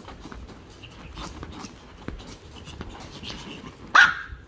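A Pomeranian pawing at a leather couch cushion, with light scratching and clicking, then one sharp, loud bark right at the end.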